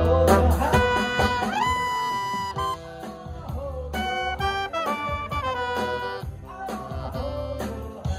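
Live jazz band music, with a trumpet played close by over the band's brass, drums and cymbals.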